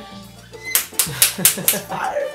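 A woman laughing, a quick run of breathy "ha"s about four a second that starts about a second in, over steady background music.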